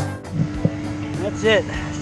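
Background guitar music cuts off. A steady low hum follows, with a couple of soft knocks and a short voice sound about one and a half seconds in.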